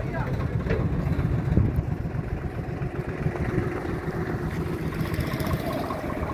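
Diesel tractor engine running steadily at low revs.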